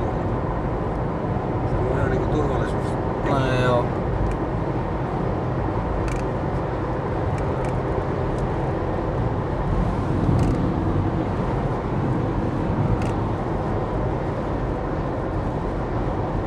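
Steady road and engine noise heard inside a car cabin while driving at highway speed, with a brief stretch of voice a few seconds in.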